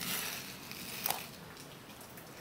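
Soft handling noise: a brief rustle, then a light click about a second in.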